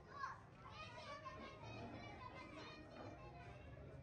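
Faint, indistinct voices of children playing and calling in the distance.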